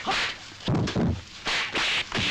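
Kung fu fight sound effects: a rapid run of sharp whooshing swishes from blows and a staff cutting the air, with a few heavier hits around the middle.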